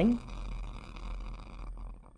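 Bunsen burner flame crackling and rushing, then dying away near the end as the air inlet is closed: starved of air, the flame loses its hot blue inner cone and its crackling and burns quietly.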